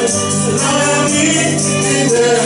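Gospel hymn singing: a man sings into a microphone, held notes sliding in pitch, with other voices joining. Jingling percussion keeps a steady beat.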